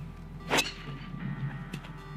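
Driver head striking a teed-up golf ball on a tee shot: one sharp crack about half a second in. Faint background music runs underneath.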